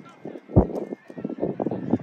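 Outdoor soccer game sound: unclear shouting from players and spectators, with one loud, short thump about half a second in.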